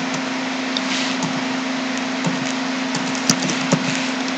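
A few scattered computer keyboard key clicks over a steady background hiss and low hum.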